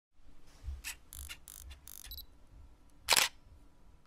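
SLR camera sounds: a run of short mechanical clicks and whirs over the first two seconds, then one loud shutter click about three seconds in.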